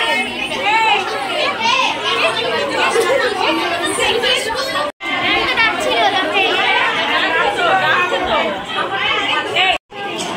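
Crowd chatter: many women and girls talking over one another at once. The sound cuts out briefly twice, about halfway and just before the end.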